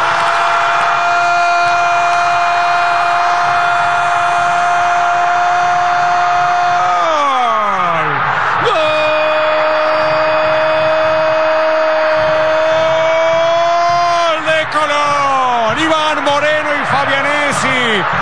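Football commentator's long drawn-out goal cry, "goooool", held on one note for about seven seconds before sliding down. After a breath he holds a second long note, which breaks into shorter excited shouts near the end, with stadium crowd noise underneath.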